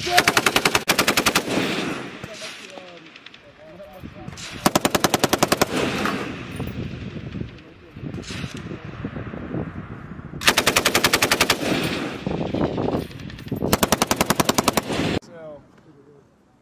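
Belt-fed machine gun firing four bursts of rapid shots, each about a second and a half long and a few seconds apart, each followed by a rolling echo.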